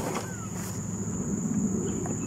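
A steady high-pitched insect drone, with a short rising bird chirp about a third of a second in, over a low background rumble. The mower engine is not running.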